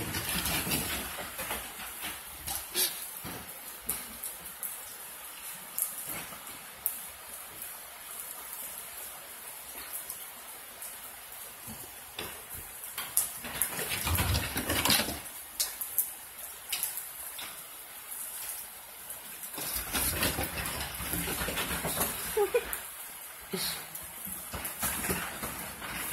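Two dogs play-wrestling on a wooden floor: scattered claw clicks, bumps and scuffling, with a louder scuffle about halfway through and a busier stretch of scuffling in the last few seconds.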